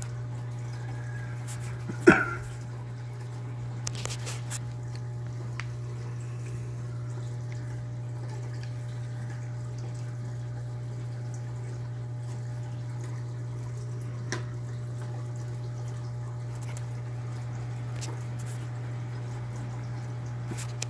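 Steady low hum of a reef aquarium's pumps, with water trickling and dripping. One sudden loud sound about two seconds in, and a few faint clicks later.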